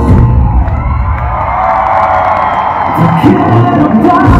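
Live pop-rock band playing in a large hall while the audience cheers and screams, the cheering swelling to its loudest about halfway through as the band's bass drops back.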